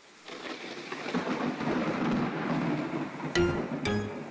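Storm sound effect on the synth accompaniment track: a wash of rain with low thunder rumble fading in. Near the end, two sharp pitched chords strike about half a second apart.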